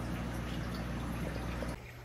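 Aquarium water trickling steadily over a low steady hum, cutting off shortly before the end.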